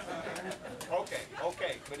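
A person's voice making sounds without clear words, several short pitched calls that rise and fall.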